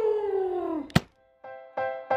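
A drawn-out vocal sound sliding slowly down in pitch, cut off by a sharp click about a second in. After a brief silence, a jingle of bright, evenly repeated keyboard notes begins.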